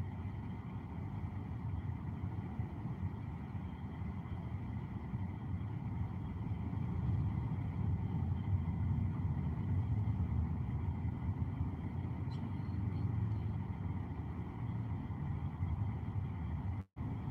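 Steady low rumble of a car's engine and tyre noise heard from inside the cabin while driving.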